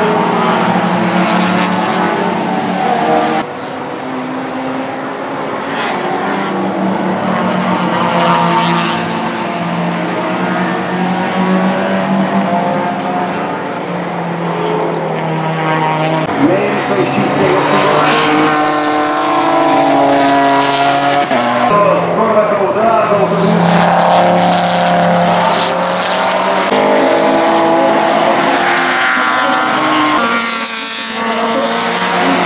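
Race car engines running hard as touring cars lap the circuit, their pitch rising and falling through gear changes and as the cars pass. The sound changes abruptly several times.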